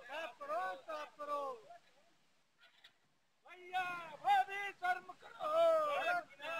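Men shouting slogans in loud, strained voices: a burst of shouts, a pause of about a second and a half, then louder shouting.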